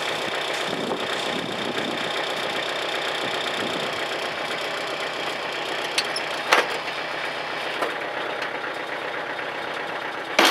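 Tractor engine running steadily while its rear-mounted rotary tiller churns shallowly through leaf mold. A couple of sharp clicks sound about six seconds in.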